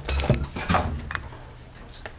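Short knocks and rustles of papers and hands at a desk picked up by a table microphone, mixed with a brief indistinct voice in the first second, then settling to a low steady electrical hum.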